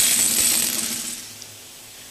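A large studio prize wheel spinning, its rim pegs rattling continuously; the rattle fades away over about a second and a half as the wheel slows.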